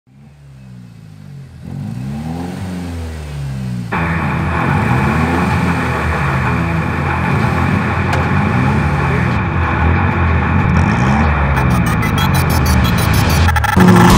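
Car engine revving, with rising and falling sweeps, layered with an intro music build-up that grows louder in steps and breaks into heavy rock music just before the end.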